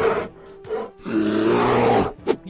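Dramatic editing sound effects over a whip-pan transition: a sudden loud hit at the start that dies away quickly, then from about a second in a loud, sustained noisy effect with a low steady tone beneath it.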